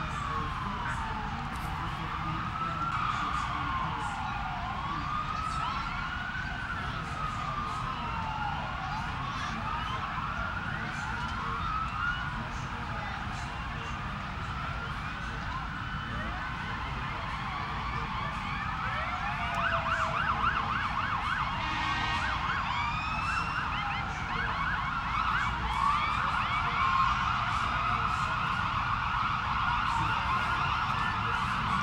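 Several emergency-vehicle sirens wailing at once, overlapping, each slowly sweeping up and down in pitch. About two-thirds of the way through, a fast yelping siren joins and the sirens get somewhat louder.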